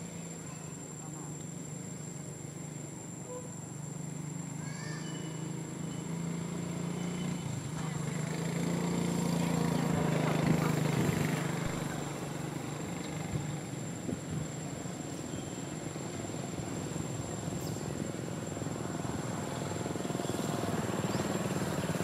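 A motor engine hum that grows louder to a peak about halfway through, then fades, like a vehicle passing. A few short high chirps come near the start.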